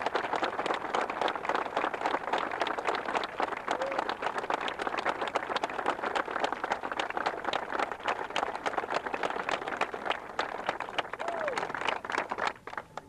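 A crowd of spectators applauding, a dense and steady patter of many hands clapping.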